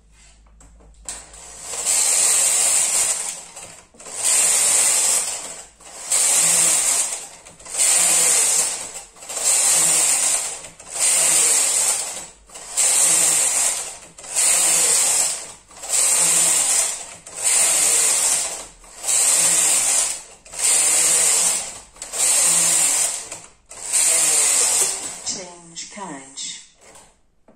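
Brother KH930 lace carriage pushed back and forth across the metal needle bed, a clattering slide on each pass with a short pause at each end. About a dozen passes, one every two seconds or so, as the carriage transfers stitches for the lace pattern.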